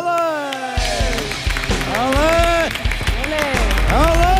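Audience applauding at the end of a flamenco song, with several long, drawn-out shouts of cheering rising and falling over the clapping.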